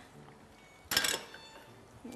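One short metallic clatter of cookware being handled on the stove, about a second in, against a faint background hiss.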